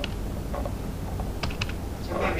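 Typing on a computer keyboard: a few separate keystrokes, with a close pair of them about one and a half seconds in.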